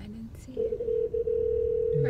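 A long electronic beep from a parking pay machine: one steady mid-pitched tone that starts about half a second in with a couple of brief stutters, then holds.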